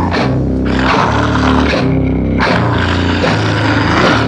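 Grindcore band's distorted guitar and bass playing a riff, the low notes changing about every half second to a second, with no vocals.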